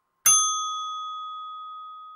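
A single bell-like ding sound effect, the notification-bell chime of an animated subscribe button. It is struck once about a quarter second in, then rings out clear and slowly fades over nearly two seconds.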